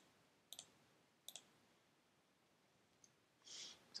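Faint computer mouse clicks: two quick clicks less than a second apart, each a short press-and-release pair.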